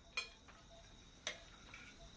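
Faint clock ticking: two sharp ticks about a second apart.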